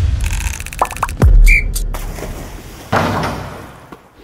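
Intro sting for an animated title sequence: sound-design music with a rapid run of clicks, then a deep bass hit whose pitch drops sharply about a second in, and a second whooshing swell near three seconds that fades away.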